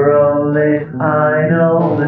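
Music: a singing voice holding two long, chant-like notes over a steady drone, with a short break about a second in.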